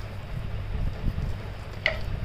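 Soft scraping and tapping of a steel spoon spreading chicken filling on a bun, under a steady low rumble on the microphone. A brief high-pitched sound comes near the end.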